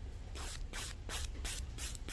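Emery board nail file drawn back and forth across a fingernail: five short, even strokes, about three a second, starting about a third of a second in.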